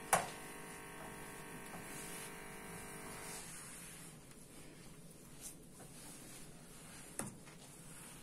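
Cloth rubbing on a stovetop as it is wiped, over a faint steady machine hum that stops about three and a half seconds in. A short click near the start and another near the end.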